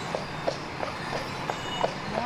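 A Clydesdale's hooves clip-clopping on pavement at a walk, about three beats a second, over the rolling noise of the wheeled sleigh it pulls.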